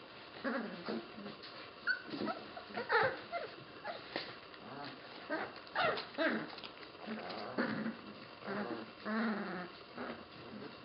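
A litter of young puppies playing and wrestling together, making a string of short, separate vocal sounds throughout, with a longer one near the end.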